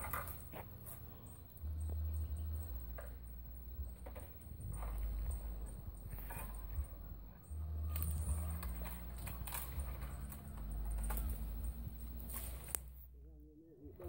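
A long pole striking and rattling among tree branches to knock fruit down, heard as scattered sharp knocks and rustles. A heavy, uneven low rumble on the microphone runs underneath.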